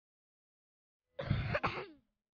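A person coughing, a short double burst that starts a bit over a second in.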